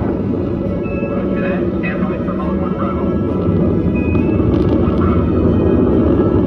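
Deep, steady rocket rumble from a launch soundtrack, with faint, unclear mission-control radio chatter and two short high beeps on the radio link. Music plays under it.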